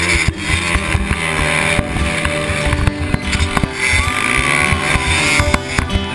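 Dirt bike engine revving up and down under a rider on a trail, with music playing underneath.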